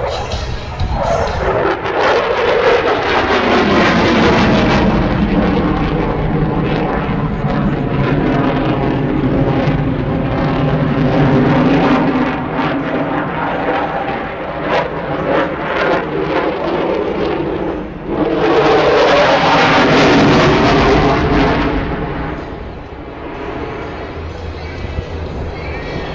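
F-16 fighter jet's engine noise as it flies a display pass, its pitch falling steeply in the first few seconds as it goes by. The noise swells loud again near the end of the pass.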